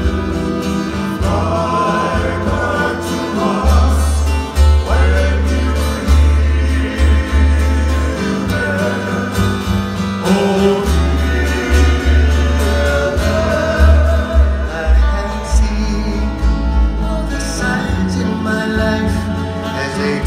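Live Hawaiian band playing: a heavy upright bass line under strummed strings, with men's voices singing together. The bass is loud and boomy.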